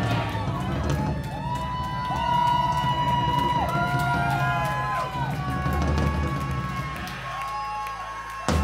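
Live punk rock band playing with distorted electric guitar, bass and drums, a sustained melody line bending up and down over it. Near the end the bass and drums briefly thin out.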